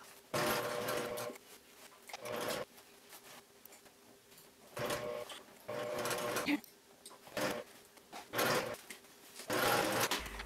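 Domestic electric sewing machine stitching in short stop-start runs, about seven of them, each a second or less, with brief pauses between.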